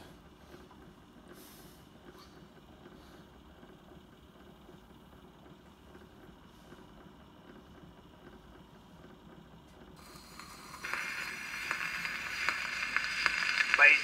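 The surface noise of a pre-1910 acoustic gramophone disc playing through an HMV Monarch horn gramophone after the needle is set down. After about ten seconds of faint handling and room tone, a hiss and crackle starts and grows louder over the last few seconds.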